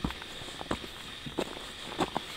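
Footsteps of a hiker walking on a thin layer of snow over a rocky trail: a steady walking pace of about one step every 0.7 seconds, three steps in all.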